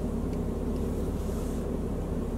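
Steady low hum inside a car's cabin, the running sound of the vehicle with no other event standing out.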